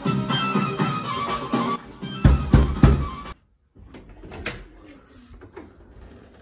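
An Arabic dance song plays: a melodic line over a beat, with loud bass hits shortly before it cuts off abruptly about three seconds in. After a moment of dead silence comes quiet room sound with a sharp click.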